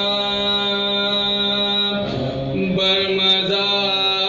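A man chanting soz, the unaccompanied melodic recitation of a marsiya elegy, holding long drawn-out notes. About two seconds in the held note breaks off briefly, and a new sustained phrase starts shortly before three seconds.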